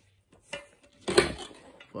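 Hard objects being handled while rummaging in a bag: light knocks and rustles, then a sharper clatter a little over a second in.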